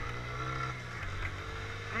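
Motorcycle engine running steadily while riding, with a low even hum under wind and road noise.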